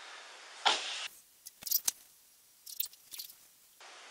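A short breath-like burst, then a handful of faint, short clicks and smacks spread over a couple of seconds in a quiet room.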